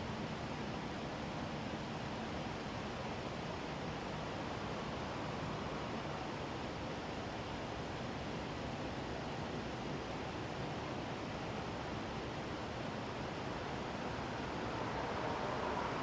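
Steady, even rush of outdoor background noise, growing slightly louder near the end.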